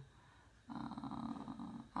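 A woman's drawn-out, creaky hesitation sound, "uhhh", held for about a second, starting under a second in.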